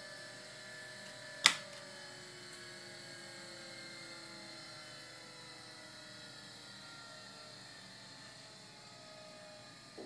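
Gyroscopic flight instruments of a Cessna 152 panel, including the electric turn coordinator, spinning down after the master switch is turned off: several faint whines slowly falling in pitch and fading. A single sharp click comes about a second and a half in.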